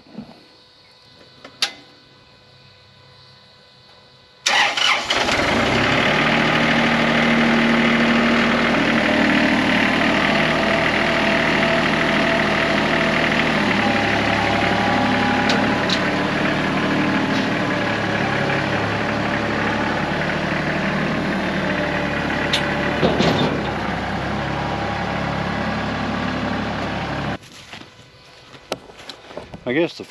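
A Kubota compact loader tractor's diesel engine comes in abruptly about four seconds in and runs steadily as the tractor is driven off a trailer. Its note shifts about halfway through, and it cuts off suddenly a few seconds before the end.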